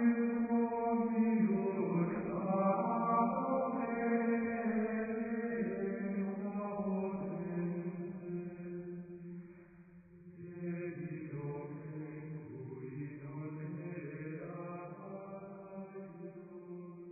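Sung religious chant: voices holding long notes. It dips briefly about ten seconds in, then continues more softly and fades toward the end.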